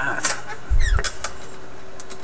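Philips 922 tube radio's output changing by itself over a steady hum: a falling chirp, then a loud low thump and a click about a second in. This is a sign of the set's unstable operation.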